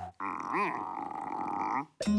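A cartoon character's gruff, wordless grunt lasting about a second and a half, with a brief rise and fall in pitch partway through, then cut off.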